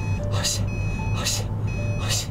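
Steady low engine and road drone inside a moving car, with a man's voice and short steady electronic tones that step between a few pitches over it.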